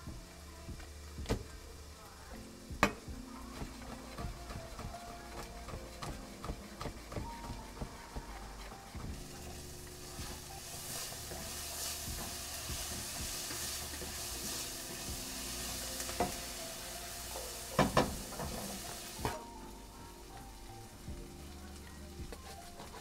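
Chopped onions sizzling in a frying pan while a spatula stirs them. The sizzle is loudest through the middle stretch. There are sharp knocks of utensils on metal in the first few seconds and again a little before the end.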